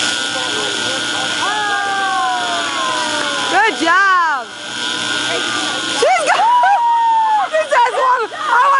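High voices calling out in long sliding whoops over a steady background hum: a long falling call, two quick rise-and-fall whoops about four seconds in, and a held call around six seconds in, then quick chatter near the end.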